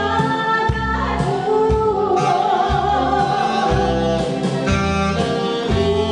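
A woman singing a song into a microphone over amplified instrumental accompaniment with a repeating bass line. She holds a note with vibrato about a second in.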